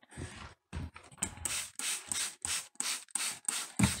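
Hand-held trigger spray bottle misting water onto shredded-paper worm bedding. After a second of soft rustling, it is squeezed in quick repeated sprays, about three a second.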